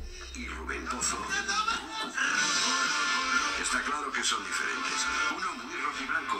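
Cadena SER radio stream playing through an iPhone's speaker: a voice over music, with little bass.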